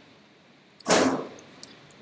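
A single sharp knock about a second in that dies away within half a second, followed by a few faint clicks.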